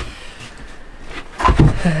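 A heavy thump about one and a half seconds in, as a wooden cabinet frame is set in place for a trial fit, after a stretch of low room noise.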